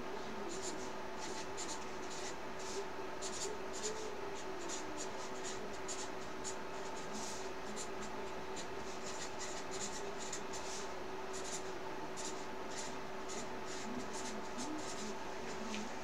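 Felt-tip marker scratching and squeaking across a paper poster in many quick, short strokes of hand lettering, with a faint steady hum underneath.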